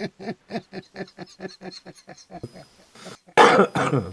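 A man laughing in a rapid run of short breathy pulses, about four a second, that tail off. A short, louder burst follows near the end.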